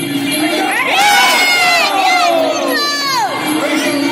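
Fight crowd shouting and cheering: several voices yell long shouts that fall in pitch, loudest from about one second in to about three seconds in, over steady background music.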